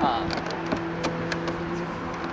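Light scattered clicks and knocks from a Hobie kayak seat's plastic adjustment tab and frame being handled, over a steady low hum.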